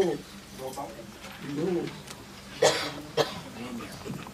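Low, indistinct voices in a room, in short broken fragments, with a brief cough-like burst about two-thirds of the way through.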